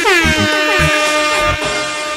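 A DJ air-horn sound effect blasted over the dance mix: stacked horn tones that slide down in pitch and then hold, with quick echoing repeats. It fades after about a second and a half while the music carries on.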